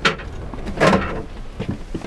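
A sharp click, then a short scraping clatter about a second in, as a fold-down stainless-steel drying rack over a shower is swung down.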